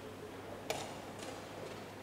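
A sharp click about two-thirds of a second in and a fainter one half a second later, over a steady murmur of room noise.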